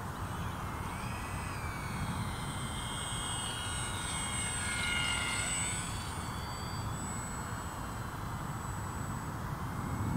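Brushless electric motor and propeller of a small E-flite UMX Turbo Timber Evo RC plane on a 3S battery, a high whine as it takes off and flies past. The whine grows louder and shifts in pitch as the plane passes about halfway through, then fades, over a low rumble of wind on the microphone.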